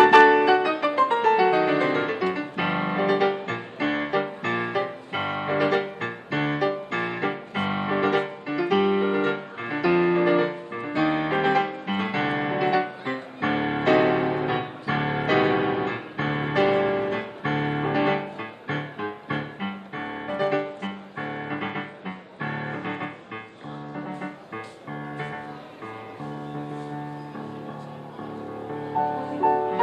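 Solo digital piano played with many quick notes, opening with a fast run down the keyboard. The playing grows gradually softer toward the end.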